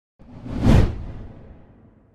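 A whoosh sound effect with a low rumble underneath, swelling quickly to a peak under a second in, then fading away slowly.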